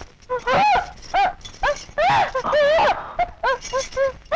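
A woman's anguished cries of pain: a run of short, high-pitched wails and sobs that come faster towards the end.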